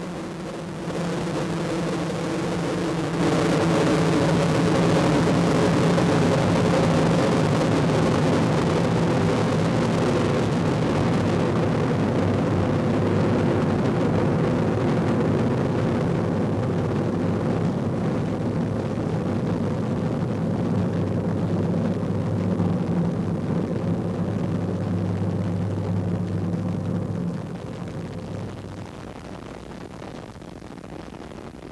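Space Shuttle Columbia's solid rocket boosters and main engines during ascent: a loud, steady rumbling roar with a low hum beneath it. It grows louder about a second in and again a few seconds later, then falls away near the end.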